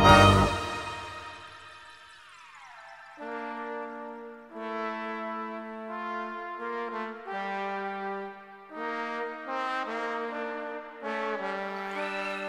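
Music: a loud full chord breaks off about half a second in and a sliding tone falls away. Then brass-sounding instruments play slow sustained chords, changing about once a second, like a chorale.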